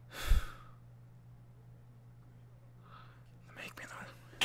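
A man's short, heavy sigh, a breathy exhale that hits the microphone with a low thump about a third of a second in. Faint breathy sounds follow near the end.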